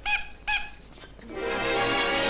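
Car horn honking twice in short blasts whose pitch rises and falls, played as part of an orchestral piece. The orchestra comes back in with sustained chords about a second and a half later.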